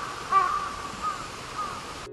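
Crows cawing: a handful of short caws in quick succession, the loudest just after the start and fainter ones later, over a faint steady outdoor background.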